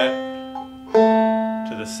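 Five-string banjo in open G tuning picked one note at a time: a note rings and fades, and about a second in a new, slightly lower single note is picked, the second fret of the G string.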